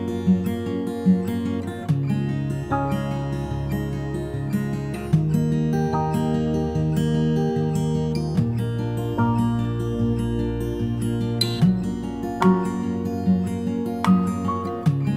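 Background music: a soft instrumental tune of plucked acoustic guitar notes in a steady, repeating pattern.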